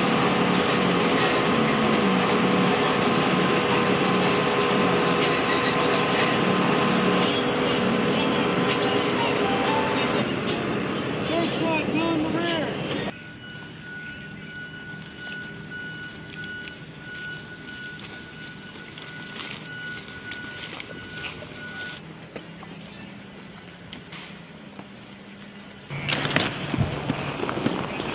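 A school bus's engine running steadily, with voices over it, for about the first thirteen seconds. Then it cuts away sharply to a much quieter stretch with a thin, steady high tone and a few clicks, and it gets louder again near the end.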